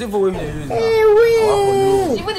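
A person's voice breaking into a long, high wailing cry, held on one note for over a second after a brief stretch of speech.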